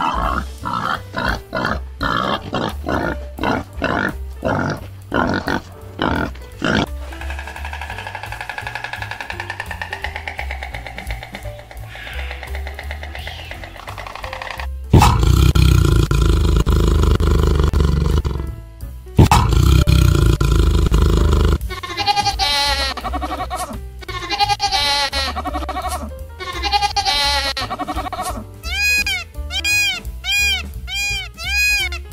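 Wild boars grunting in a quick series of short grunts over background music. About halfway there are several seconds of loud, rough noise, and near the end come repeated high calls, about three a second.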